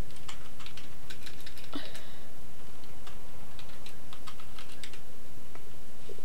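Typing on a computer keyboard: irregular key clicks at an uneven pace, over a steady low background hum.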